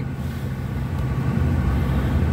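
Steady low rumble of a car being driven, heard from inside the cabin, with faint tyre hiss on a wet road.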